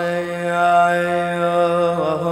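A man's voice chanting an unaccompanied Islamic devotional nasheed, holding one long steady note.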